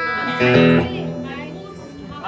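Electric guitar chords strummed and left to ring through a guitar amplifier: one chord at the start, then a louder one about half a second later that dies away.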